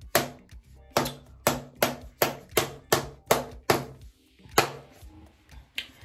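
A plastic deodorant stick being handled, giving a run of sharp clicks about three a second, then two more spaced out near the end.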